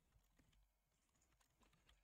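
Near silence, with a few very faint scattered clicks.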